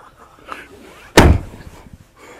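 A single loud slam or thump about a second in, with a short fading tail.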